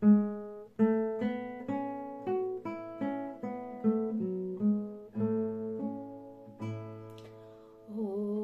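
Nylon-string classical guitar played as a slow fingerpicked introduction: single melody notes about every half second over low bass notes, each note ringing and fading.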